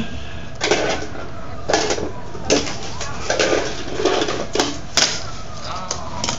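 Sharp plastic clicks and clacks, about five spread out, from a plastic fingerboard storage case and fingerboard being handled on a wooden floor.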